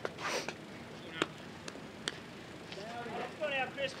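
Sharp single knocks about a second and two seconds in, then spectators' voices calling out near the end.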